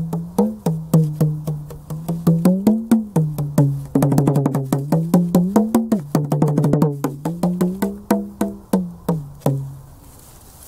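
Small rope-tensioned, double-headed hand drum played with bare palms and fingers in a steady rhythm of sharp strokes, breaking into fast rolls about four and six seconds in.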